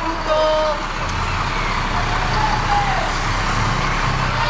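Fire engine's engine running close by, a low steady rumble coming up about a second in, under loud street noise with scattered distant voices.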